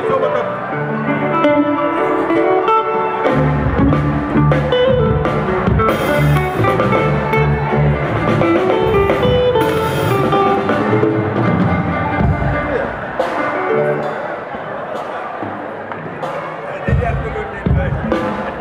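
Live band playing: electric guitars over hand drums, with a bass line coming in about three seconds in, dropping out for a few seconds near the end and returning.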